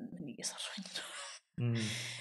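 Only speech: a person talking quietly, with a short pause near the end.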